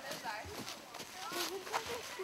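Children's voices talking among themselves, with a few footsteps on a dirt path strewn with dry leaves.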